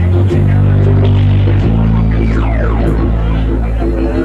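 Live reggae-rock band playing an instrumental passage, led by deep sustained bass notes that shift a few times. About halfway through, a sound glides down in pitch.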